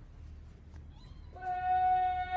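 A man's long, drawn-out shouted parade word of command, held on one steady pitch, starting about one and a half seconds in.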